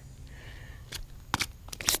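A small bass flopping on concrete pavement: three short sharp slaps, about a second in, a moment later and just before the end.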